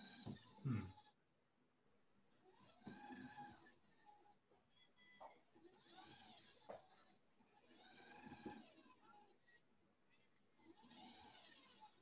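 Near silence with four faint, slow swells of breathing picked up by an open microphone, about every two and a half to three seconds.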